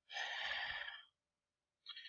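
A man taking one audible breath, about a second long, with no voice in it.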